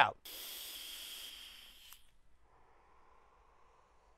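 Vapx Geyser 21700 pod mod fired on its large coil at 75 watts with the airflow wide open: a steady hiss of air and vapor drawn through the pod for under two seconds. A softer, fainter hiss of the cloud being exhaled follows.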